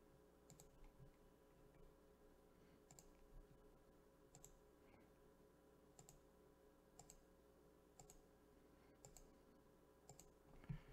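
Faint computer mouse button clicks, about one a second, over near-silent room tone.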